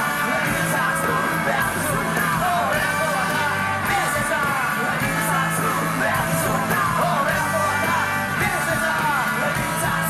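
Live rock band playing at full volume: electric guitars, bass and drums under a sung lead vocal.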